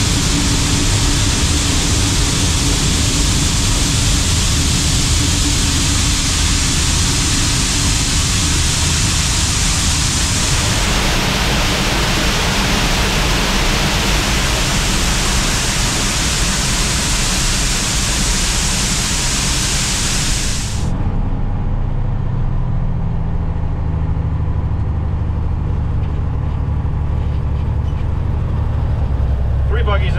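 Shelled corn pouring out of a hopper-bottom grain trailer through a steel pit grate: a loud, steady rushing hiss. About two-thirds of the way through it cuts off suddenly, leaving the low, steady rumble of the truck's idling engine heard from inside the cab.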